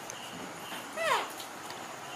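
A baby macaque gives one short call that falls steeply in pitch, about a second in.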